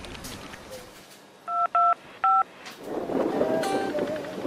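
Telephone keypad tones: three short two-note beeps of a number being dialled, the first two alike and the third slightly different. Music comes in near the end.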